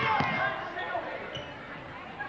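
Basketball bouncing on a gym floor: dull thuds, with voices in the hall that fade after the first half second.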